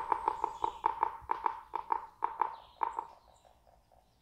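A bird calling: a rapid series of sharp notes on one pitch, about five a second, that die away to faint notes after about three seconds.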